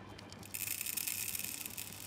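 Small gritty substrate granules poured from a scoop into a glass vessel, a dense rattle of grains hitting the glass and each other that starts about half a second in.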